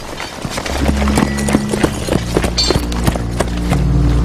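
Film soundtrack: horse hooves clattering among many sharp knocks, with low held music notes coming in underneath about a second in.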